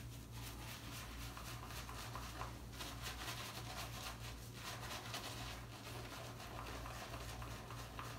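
Synthetic-knot shaving brush working shave cream into a lather on a stubbled face: a faint scrubbing of quick, repeated brush strokes over a low steady hum.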